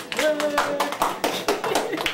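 A class of students applauding, with a voice over the clapping early on.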